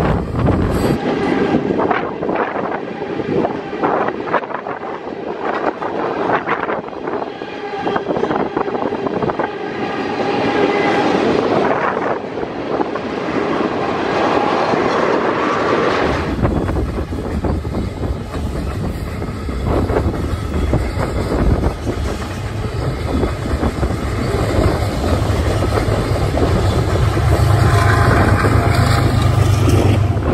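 Freight train cars rolling past on the rails, wheels clicking over the rail joints. About halfway through, wind starts buffeting the microphone with a heavy low rumble.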